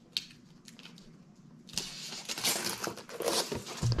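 Cardboard model-kit box lid being worked open by hand: a few faint clicks, then, a little under two seconds in, cardboard rubbing and scraping as the lid slides against the box.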